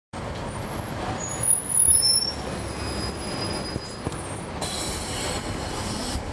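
Cabin sound aboard a 2011 NABI 416.15 (40-SFW) transit bus, its Cummins ISL9 diesel running under road noise. Thin high-pitched squeals sound over the first few seconds, and a brief hiss comes about four and a half seconds in.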